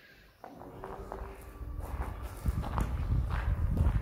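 Footsteps on a rough gravel-and-earth floor, about two steps a second, starting about half a second in and growing louder, with low rumble from the handheld camera moving.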